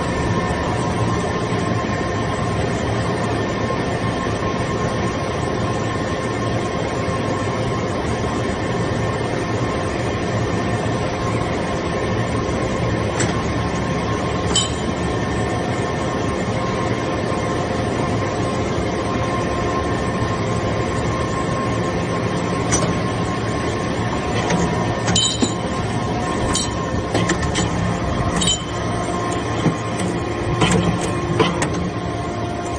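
Vertical hydraulic briquetting press running, its hydraulic power unit giving a steady hum made of several held tones. A few sharp metallic clinks come over it in the last several seconds.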